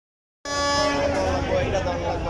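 A passenger launch's horn gives one steady blast of about a second, then fades. Voices and a low steady hum follow.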